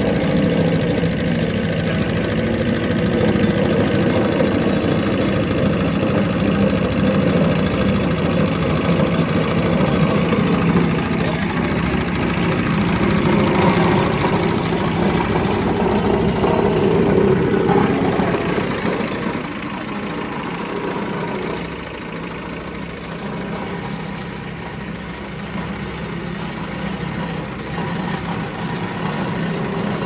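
Engine of a small double-drum road roller running steadily while it compacts a gravel road base, easing off slightly about two-thirds of the way through.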